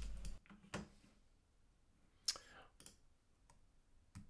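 A few faint, short computer mouse clicks, one under a second in and two more a little past the middle, against near silence.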